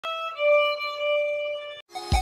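Violin bowing a brief note and then a long held note a little lower in pitch, which cuts off abruptly near the end.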